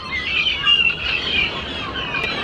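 A dense chorus of many small songbirds chirping and singing over one another, high-pitched and unbroken.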